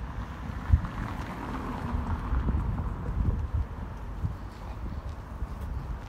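Wind buffeting and handling noise on a handheld phone microphone: an irregular low rumble with scattered soft thumps.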